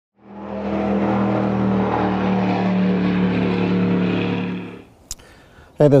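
An engine running at a steady pitch, fading in at the start and fading out about a second before the end, followed by a single click.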